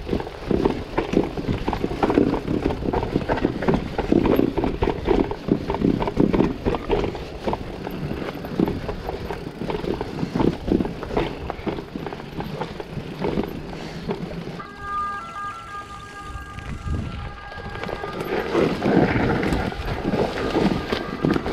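Mountain bike rattling and clattering over a rough stone and cobbled trail: a dense, irregular run of knocks from the tyres, fork and frame. It eases off for a few seconds past the middle, where a steady high hum comes in, and picks up again near the end.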